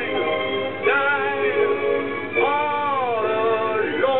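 A voice singing long held notes with musical accompaniment, a new phrase starting about a second in and another about two and a half seconds in.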